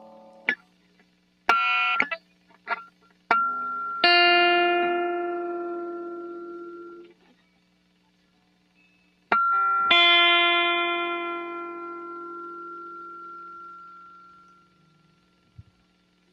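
Electric guitar: a few short plucked notes, then a strummed chord left to ring out and fade. After a pause, a single note and a second strummed chord ring out longer. This is a G7 chord with the high E string detuned 31 cents so that the seventh matches harmonic 7 of the harmonic series. A faint steady low hum sits underneath.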